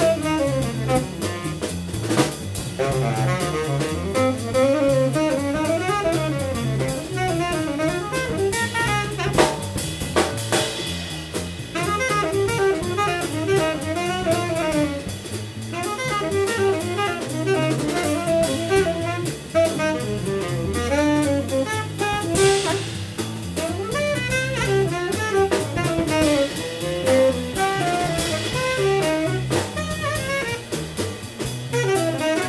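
Live jazz from a tenor saxophone, double bass and drum kit: the tenor saxophone plays winding melodic lines over the bass and the drums' steady cymbal pattern, with occasional sharp drum accents.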